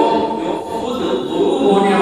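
A man's voice chanting in a drawn-out, sung style, holding long notes, with the reverberation of a large hall.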